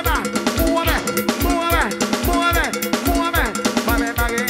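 Instrumental passage of a live cumbia band: a steady kick-drum beat with cowbell strokes over it, and a repeated falling melodic phrase.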